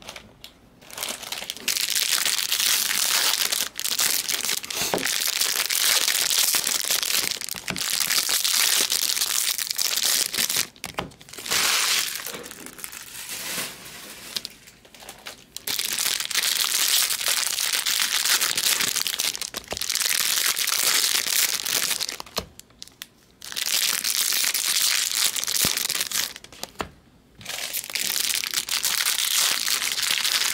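Foil wrappers of Bowman Draft Jumbo baseball card packs crinkling and tearing as packs are opened, in long stretches of several seconds with a few short pauses between.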